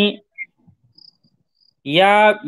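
A man's voice trails off at the start, then a short lull with a few faint, brief high chirps, and his voice starts again near the end.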